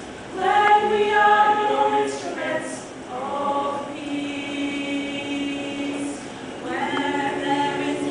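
Choir of young women singing in harmony, holding long chords phrase by phrase, loudest in the first phrase and with a new phrase starting near the end.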